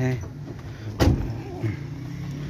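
One sharp knock about a second in, against a car's open rear door and body as a passenger is helped into the back seat, over a steady low hum.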